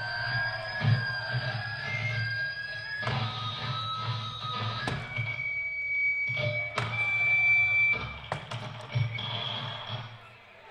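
Live rock band's amplified electric guitars ringing out at the close of a song, with long held high tones that shift pitch a few times over a repeated low bass pulse. Several sharp knocks come near the end.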